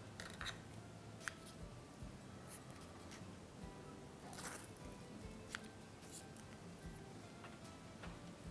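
Small craft scissors handling and snipping floral tape, heard as a few short sharp clicks, over soft background music.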